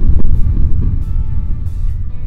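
Slowed-down sound of a water-filled disposable cup hitting the bottom of a plastic tub and splashing, heard as a sudden, loud, deep rumble that runs on. Background music plays underneath.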